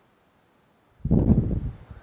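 A short, loud rush of air on the microphone, lasting under a second, comes about a second in after a second of near silence.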